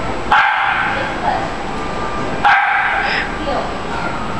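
A dog barks twice, two short sharp barks about two seconds apart.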